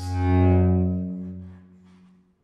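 A single low bowed cello note that swells to its loudest about half a second in and then fades away.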